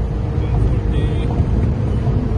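Steady low drone of engine, tyre and wind noise inside the cabin of a Stage 1 tuned Volkswagen Vento TSI driving at speed, with no audible revving or gear change.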